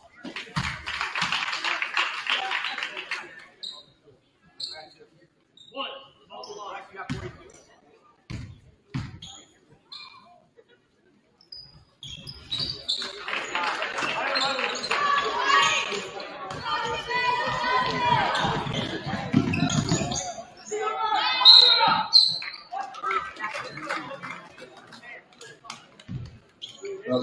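Basketball game sounds in a gymnasium: a burst of crowd cheering right after a free throw, then a basketball bouncing on the hardwood floor in scattered knocks, and a longer stretch of crowd noise and shouting voices from about twelve to twenty seconds in.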